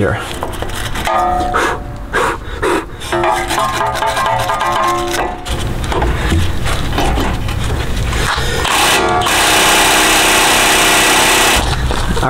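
Background music over the scratching of a wire brush scrubbing a rusty tie-rod end and its castle nut on the steering knuckle. About nine seconds in, a loud steady noise takes over for two to three seconds, then stops.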